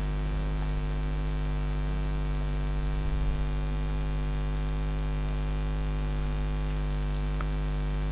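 Steady electrical mains hum with a buzzy edge, unchanging throughout.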